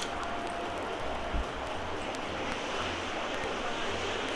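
Steady outdoor background noise, a low rumble under a soft hiss, with one faint soft thump about a second and a half in.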